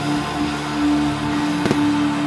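Live rock band playing: electric guitar, bass, keyboard and drums, with one steady note held throughout and a single sharp drum hit near the end.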